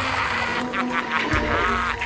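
Anime sound effect of a creature's tail sucking a body in: a rapid, pulsing, buzzing suction, several pulses a second, over held music tones.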